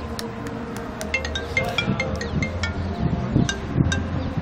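Mobile phone ringtone: a quick run of bright, chime-like notes starting about a second in, over a steady low hum.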